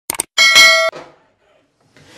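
Subscribe-button animation sound effect: two quick mouse clicks, then a bright bell ding that rings for about half a second and stops abruptly.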